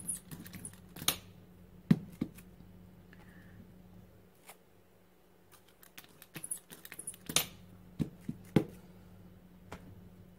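Hand-held rubber brayer rolled back and forth through wet acrylic paint on a craft-foam sheet, with a tacky rolling sound, a quick run of small clicks and several sharp knocks from the roller and tools being set down on the tabletop.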